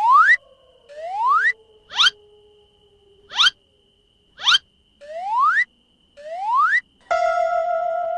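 Comic sound-effect score: a string of rising, whistle-like pitch glides, about one a second, some slow and some very quick. Near the end they give way to a held electronic chord.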